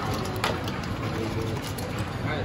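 Saucy seafood boil of crabs and potatoes tipped out of a steel bowl onto a paper-covered table: a wet, spattering slide of food with a couple of sharp clicks, at the start and about half a second in.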